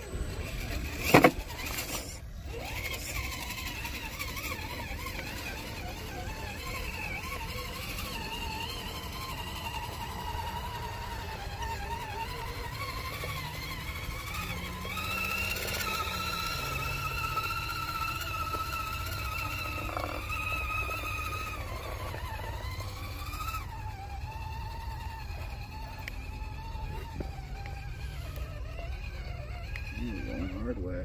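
Axial Capra RC rock crawler's electric motor and geartrain whining as it crawls up rock, the pitch drifting up and down with the throttle. A sharp knock about a second in is the loudest sound, with a low rumble underneath.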